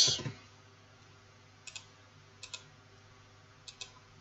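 Faint clicks at a computer: three short paired clicks, each pair quick, spaced about a second apart.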